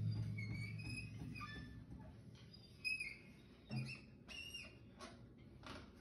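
Drum kit ringing out and fading as the drumming stops, with a low drum hum dying away in the first second or so. After that come faint high squeaks and a few soft knocks.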